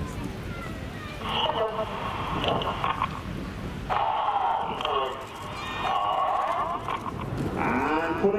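Indistinct, echoing voice of the airshow commentator over the public-address loudspeakers, in stretches of drawn-out syllables, over a low rumble that fades about halfway through.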